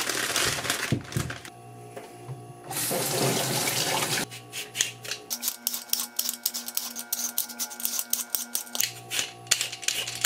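Plastic produce bag of sweet potatoes rustling as it is opened, then a handheld vegetable peeler scraping the skin off a sweet potato in quick, regular strokes, about three or four a second, over soft background music.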